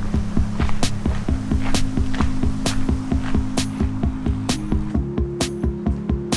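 Background music with a steady drum beat under held chords that shift about a second in and again near the five-second mark.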